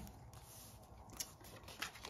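Faint paper handling as a handmade journal's pages are turned by hand, with two small crisp ticks of paper, one a little past a second in and one near the end.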